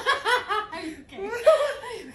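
Hearty laughter in quick repeated bursts, with a short break about a second in before another run of laughing.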